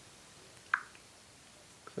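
Quiet room tone with a single short click about three quarters of a second in.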